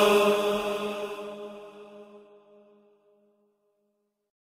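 The closing held note of a noha, a Shia lamentation chant: voices sustain one steady chanted note that fades out over the first two and a half seconds.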